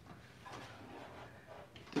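Faint handling noise in a quiet pause: a light rustle and shuffle as objects are moved about by hand, a little louder from about half a second in.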